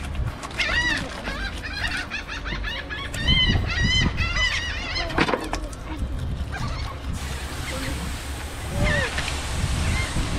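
Seagulls calling in short, repeated squawks, in clusters about a second in, again around three to four seconds, and once more near the end.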